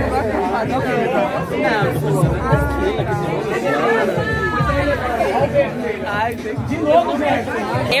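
Party crowd chatter: several voices talking over one another at close range, with music underneath.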